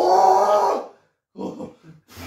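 A man's long drawn-out groan that stops just under a second in, followed by a short grunt. He is reacting to the electric pulses of a labour-pain simulator working the muscles of his belly.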